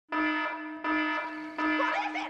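Opening intro music: a single sustained note sounded three times at the same pitch, each starting about three-quarters of a second after the last.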